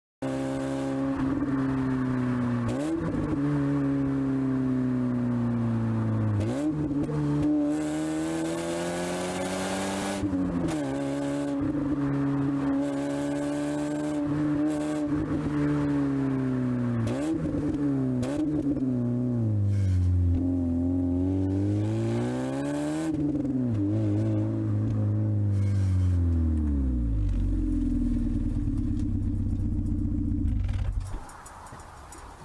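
Alfa Romeo GTV engine heard from inside the cabin while driving, its note climbing and falling back again and again with throttle and gear changes. Near the end the pitch drops low as the car slows down.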